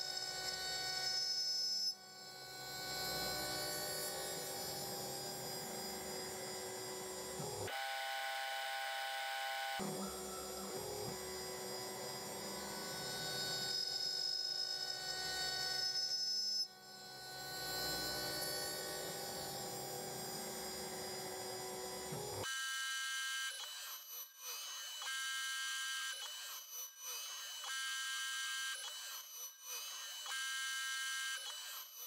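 CNC milling machine cutting pulley teeth with an end mill: a steady whine of several tones from the spindle and axis motors, which thins out for about two seconds some eight seconds in. In the last part the tones come and go in short stretches every second or two as the machine makes short moves.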